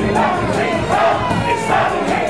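Live rap performance: a rapper shouting lyrics into a handheld microphone over a loud backing beat through the club's sound system, with crowd voices shouting along.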